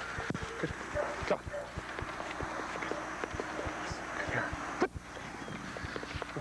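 Footsteps of a person walking on grass with a dog trotting at heel: soft, irregular thumps, several a second, over a steady hiss, with one sharper knock near the end.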